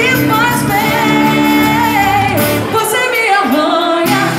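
A woman singing, holding long wavering notes, with acoustic guitar, electric bass and drums played live. Near the end the low band sound briefly drops away and her voice slides through a note nearly alone.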